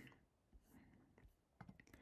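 Near silence: faint room tone, with a few soft clicks near the end.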